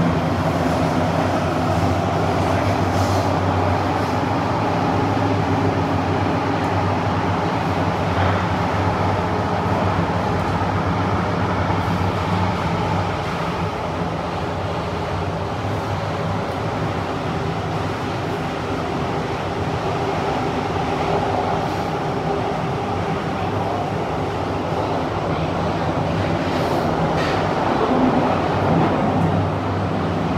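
Kawasaki–CRRC Qingdao Sifang CT251 metro train running between stations, heard from inside the passenger car: a steady rumble of the wheels on the rails under a low, even hum, with a few faint clicks.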